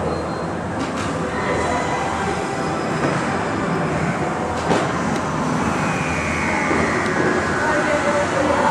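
Indistinct voices murmuring over a steady rumbling background din, with a faint click about a second in and another about four and a half seconds in.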